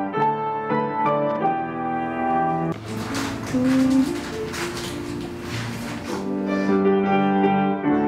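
Young Chang grand piano played in slow phrases of single notes and chords. About three seconds in, the notes give way to a few seconds of scratchy, rustling noise over held low tones, and the piano phrases return near the end.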